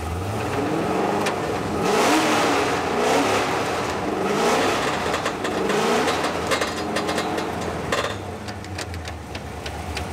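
Car engine running with a T-56 Magnum manual transmission spinning the drivetrain while the car is up in the air. Its pitch rises and falls repeatedly as the sequential shifter is run through the gears, with a few sharp clicks about eight seconds in.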